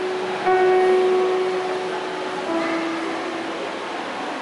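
Choir of women's and men's voices singing a harana (serenade song), holding one long note and then stepping down to a lower held note.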